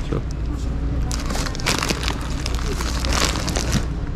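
Plastic bags of dried carioca beans crinkling and rustling as a hand handles them in their shelf box, in two spells: about a second in and again near the end.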